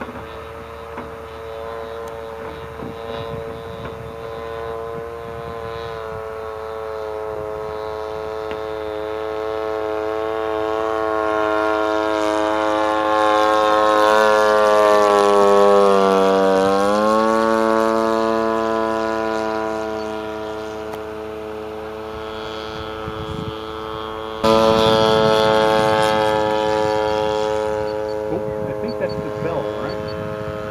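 Zenoah G-38 two-stroke gas engine of a quarter-scale radio-control biplane in flight. It grows louder as the plane approaches, its pitch drops as it passes about 16 seconds in, then fades. It turns abruptly louder again about 24 seconds in.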